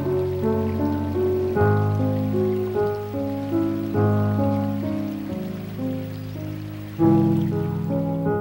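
Slow, gentle piano music, single notes moving over sustained chords, with a fresh chord struck near the end. A faint hiss of running water from a creek lies beneath it.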